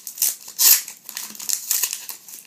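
Wrapper of a Panini sticker packet crinkling and crackling as it is torn and pulled open by hand. The loudest crackle comes a little under a second in.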